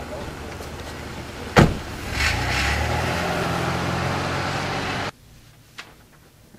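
A car door slams shut about a second and a half in. The car's engine then starts and runs steadily, cutting off suddenly about five seconds in.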